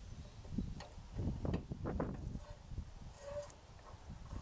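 A few light knocks and clunks of a steel roller shaft and rubber keel rollers being worked into a boat-trailer keel roller bracket, most of them in the first half.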